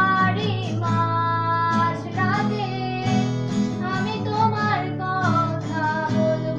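A woman singing a song to acoustic guitar accompaniment, holding several long notes over the strummed guitar.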